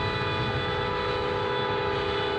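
Freight train's horn sounding one long, steady blast of several notes at once, over the low rumble of the moving train.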